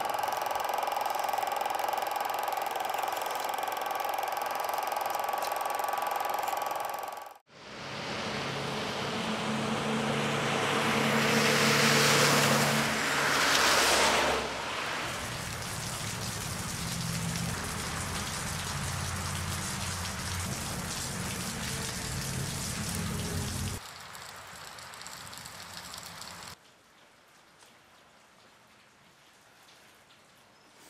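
A steady whir with a few high steady tones cuts off suddenly about seven seconds in. Then a rush of rain falling on wet pavement swells to its loudest around twelve to fourteen seconds in, with a low hum beneath it. The sound then drops away in two steps to a faint hush near the end.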